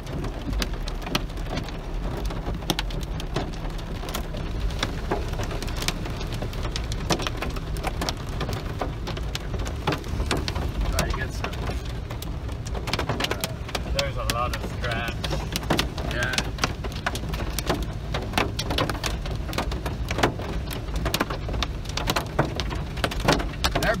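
Hail and heavy rain drumming on a car's roof, hood and windshield from inside the cabin: a dense, continuous patter of sharp ticks over a low steady rumble.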